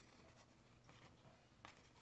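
Near silence, with faint rustling and light ticks of glossy hockey trading cards being handled and shuffled between the fingers, one clearer click about one and a half seconds in.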